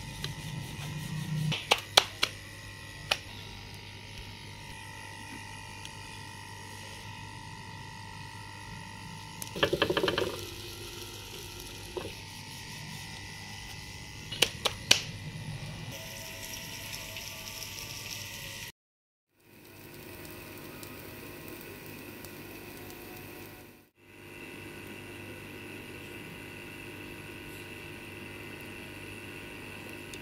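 A wooden rolling pin and board knocking now and then as paratha dough is rolled out and handled, a few sharp knocks in small clusters, over a steady faint hum.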